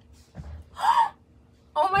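A woman's loud, breathy gasp of delight about a second in, with a short voiced rise and fall in it, followed near the end by the start of her exclaiming "oh my".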